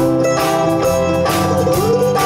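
Live folk-rock band playing: strummed acoustic guitar and mandolin over electric bass and a drum kit, with a steady beat. Near the end a held note slides up and sustains.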